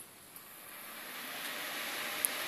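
A click as the repaired front-panel power button is pressed, then a desktop PC powering up: its cooling fans spin up into a steady whirr that slowly grows louder.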